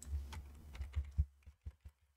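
Computer keyboard and mouse clicks in a quick irregular run of about seven, as a block of lines in a code editor is selected and deleted, over a low steady electrical hum.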